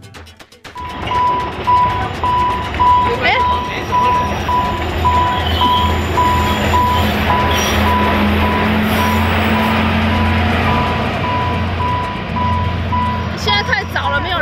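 Level-crossing warning signal beeping in one steady high tone, about twice a second, starting suddenly about a second in. Under it, an Alishan Forest Railway train rumbles over the crossing: its cars and diesel locomotive pass close by.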